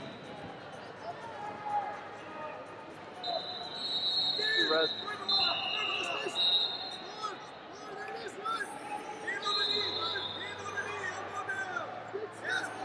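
Wrestling-arena hubbub: scattered, indistinct voices and shouts echoing in a large hall. Several sustained high whistle tones come in around the middle and again near the end.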